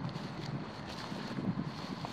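Fairly quiet, steady wind noise on the microphone outdoors.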